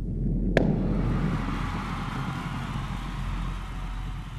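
Outro title-card sound effect: a low hum, then a sharp hit about half a second in, followed by a long rumbling noise that slowly fades.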